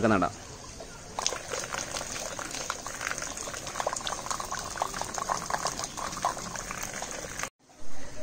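Water sprinkled in streams onto coco peat in plastic seedling trays, a continuous pattering splash that starts about a second in and cuts off suddenly near the end.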